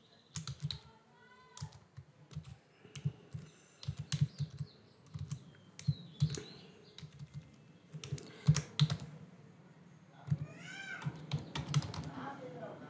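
Typing on a computer keyboard: irregular runs of keystroke clicks. A few short pitched sounds that rise and fall come in between, the longest near the end.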